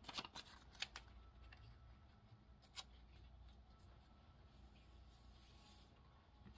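Faint rustling and sliding of coffee-filter paper strips being handled on a desk, with a few soft taps in the first second and one more about three seconds in; otherwise near silence.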